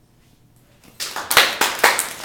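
Small classroom audience breaking into applause about a second in, many hands clapping unevenly.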